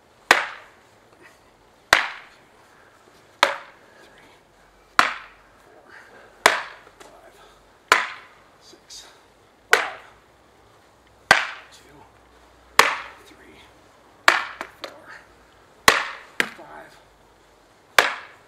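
SCA-style practice swords clacking in a dual-sword block-and-strike drill: a single sharp hit about every one and a half seconds, eleven in all, a few followed by a lighter second knock.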